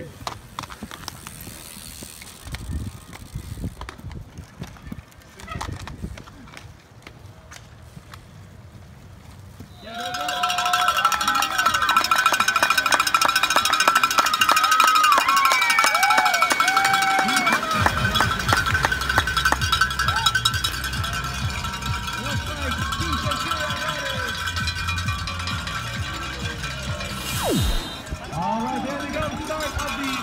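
Cyclocross spectators' cowbells ringing, which starts about ten seconds in and then goes on as a loud, rapid clanging, with cheering and whooping voices over it. A low rumble joins from about halfway through. Before that there are only quieter outdoor race sounds.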